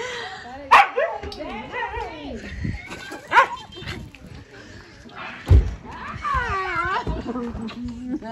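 Farm dogs barking and yipping excitedly around an arriving car, with two sharp barks, one near the start and one about three and a half seconds in, amid excited voices. A low thud comes about five and a half seconds in.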